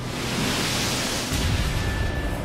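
Heavy seas crashing over a ship's bow: a loud rushing wash of breaking water, with a deep rumble coming in after about a second and a half.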